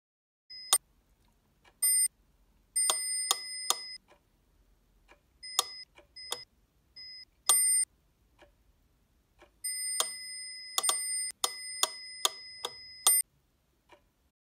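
A stop-clock and a mechanical metronome ticking and clicking in an uneven pattern. The clicks are mixed with high, steady electronic beeps of varying length, which stop and start abruptly. The longest beep runs for about three and a half seconds near the end.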